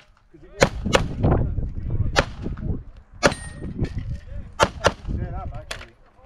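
Pistol shots fired during a practical-shooting stage, about seven sharp cracks in quick pairs and singles. There is a close pair about half a second in, single shots near two and three seconds, another pair just before five seconds, and a last shot near the end.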